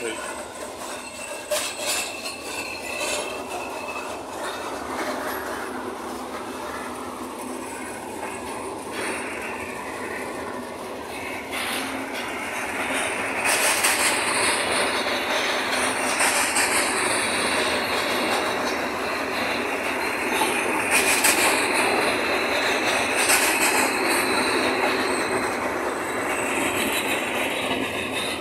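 Passenger coaches of a Bergensbanen train rolling past the platform as it pulls out of the station, a steady rumble of wheels on rail that grows louder about halfway through, with short high-pitched wheel squeals now and then.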